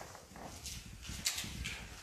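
Footsteps on a floor with light shuffling, heard as irregular soft clicks and low thumps.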